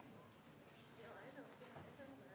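Near silence: faint room tone with soft footsteps and faint murmuring.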